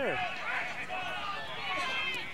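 Outdoor lacrosse-field ambience: faint, distant shouting voices from the field and sideline over a steady background of open-air noise.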